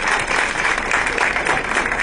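Studio audience applauding steadily, the clapping ending near the end.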